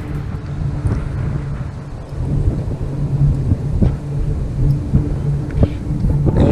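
Wind buffeting the camera microphone: a loud, low rumble, with a steady low hum underneath and a few faint clicks.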